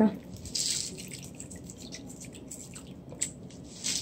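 Coarse pink salt crystals poured into a pot of broth: a brief patter as they fall in about half a second in, then scattered small drips and ticks.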